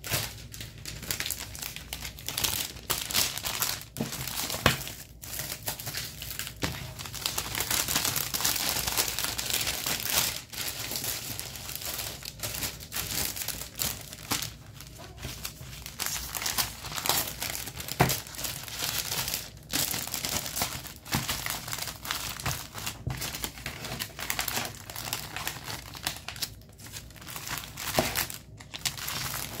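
Clear plastic packaging crinkling and rustling as it is handled, with many small sharp clicks and taps throughout.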